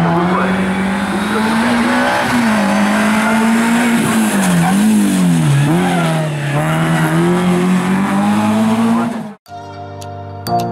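Renault Clio RS 2.0-litre four-cylinder rally engine revving hard through a hairpin: the revs climb, dip sharply twice around the middle as the car slows for the bend, then climb again. Near the end the sound cuts off suddenly and music with bell-like notes begins.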